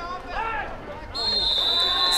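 Official's whistle blown in one long, steady, shrill blast starting about a second in, signalling the play dead after the ball carrier is tackled.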